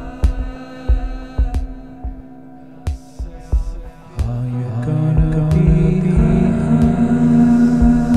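Band music: a held, droning chord with sharp percussive hits at a steady pace, and about four seconds in a louder, low sustained chord comes in and swells.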